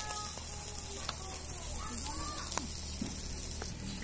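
Chicken pieces sizzling on a wire grate over hot embers: a steady hiss, with a few light clicks.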